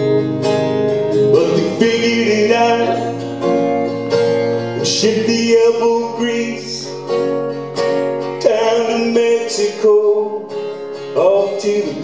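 Solo live country-folk song: a steel-string acoustic guitar strummed steadily under a man singing in phrases.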